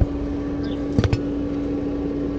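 A wrench clicking against the auxiliary-belt tensioner as it is fitted on: one click at the start and two close together about a second in. Behind it runs a steady mechanical hum with one constant tone.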